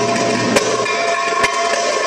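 Darbuka (doumbek) played live in a drum solo: two sharp strikes about a second apart, over steady sustained tones in the music.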